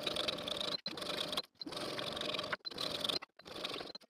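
Electric sewing machine stitching down one side of a zipper with a zipper foot: a fast, even needle rhythm in about five short runs, broken by brief gaps.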